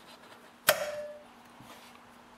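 Vise grips (locking pliers) snapping shut on a steel chainsaw bar stud: one sharp metallic click about two-thirds of a second in, with a short ringing tail.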